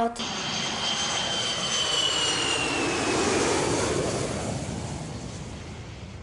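An airplane flying past: a high whining engine tone that slowly falls in pitch under a rushing noise that swells about three seconds in and then fades away.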